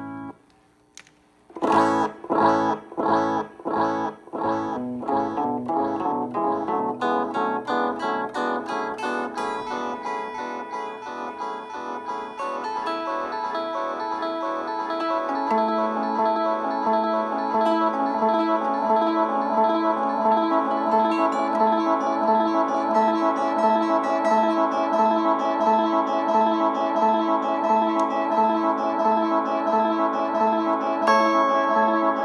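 Guitar played through a digital echo effect running on a SHARC Audio Module stomp box. After a brief pause, picked notes come about twice a second, and their repeats pile up into a dense, sustained wash of echoes.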